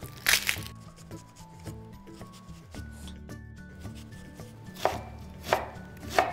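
Chef's knife chopping an onion on a wooden cutting board: a sharp cut shortly after the start, a quieter stretch, then two more strokes near the end.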